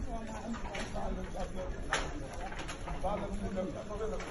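Indistinct voices of people out on a street, with a few sharp clicks, the loudest about halfway through.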